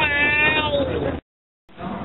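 A little girl's high-pitched squeal, one long cry gliding down in pitch, cut off suddenly just over a second in. After a short silence, steady background noise comes in.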